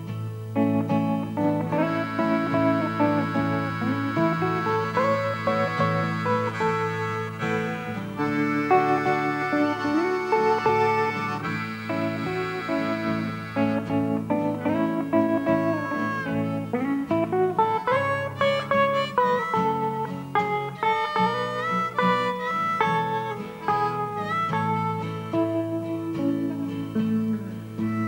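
Hollow-body archtop electric guitar playing a slow instrumental melody over a steady low accompaniment, with some notes bent or slid in pitch.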